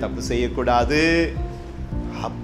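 A man singing, with long held notes, over backing music.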